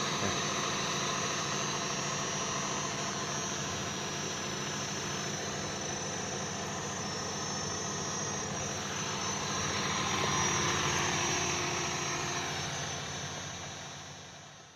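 Irrigation water pump running steadily, with the spray hiss of mist sprinkler heads watering the orchard; it fades out near the end.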